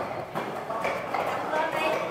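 Footsteps on a concrete floor while walking, with voices talking in the background.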